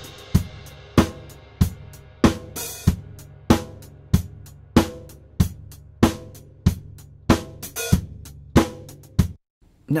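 Live drum kit played back through its overhead microphones alone: a steady beat with a strong hit about every two-thirds of a second and cymbals ringing on top. The overheads also carry a lot of low end from the kick drum. The playback stops a little before the end.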